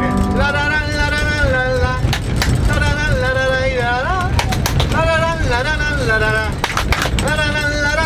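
Harmonica in a neck rack playing a folk melody in phrases of about a second, with a few hand claps keeping time, over the steady low rumble of the train carriage running.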